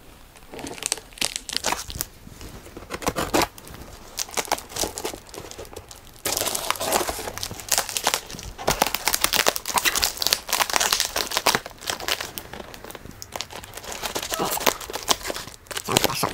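A large knife slitting the packing tape on a cardboard box, with crinkling and tearing of tape and cardboard; the cutting gets louder and busier about six seconds in.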